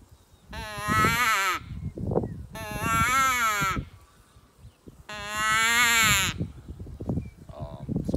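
Coyote Creek Pinoy Piper CQ hand predator call blown in three long, wavering distress wails, each about a second long and spaced a couple of seconds apart; the second drops in pitch at its end.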